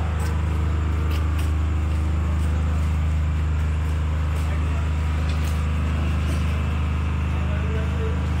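Backhoe loader's diesel engine running steadily at idle, a low even drone, with a few faint clicks.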